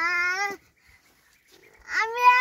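An animal's call, wavering in pitch, ending about half a second in, followed by a second, longer call starting near the end.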